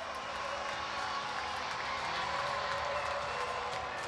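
Hockey arena crowd cheering and applauding a home goal, a steady wash of crowd noise.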